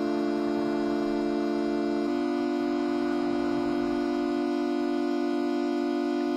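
Improvised synthesizer music: a sustained chord of held notes that shifts about two seconds in, when the lower notes drop away and a single held tone carries on. It is played on the white keys only, in C.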